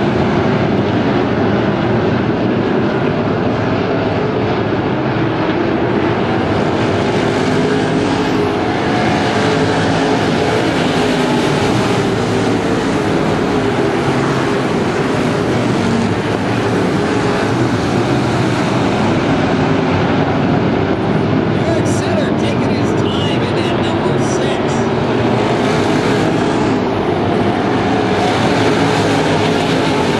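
A field of V8-powered IMCA dirt-track race cars running at speed around the oval. Their engines blend into one loud, steady wall of sound.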